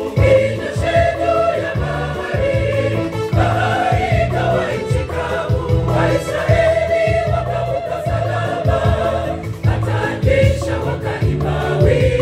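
Large gospel choir singing live in parts, voices amplified through microphones, over a steady low beat.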